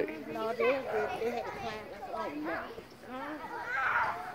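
Indistinct voices talking in the background, quieter than close speech.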